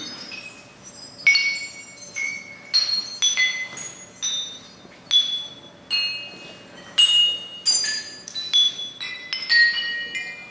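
Hanging ceramic shapes struck with clay bead mallets by several players, each strike giving a clear, high, bell-like ring that dies away. The strikes come irregularly at about two a second, with differing pitches.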